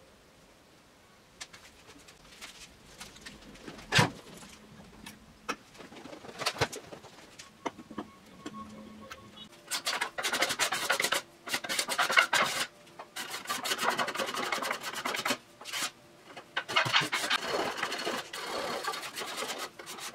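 Steel card scraper worked in repeated strokes along a quilted maple neck blank, shaving the wood, starting about halfway through; before that, light clicks and one knock from handling the work.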